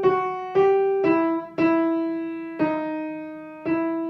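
Knight upright piano: a right-hand melody played slowly one note at a time, six single notes stepping down in pitch, each struck and left to ring and fade, the lowest note repeated and held near the end.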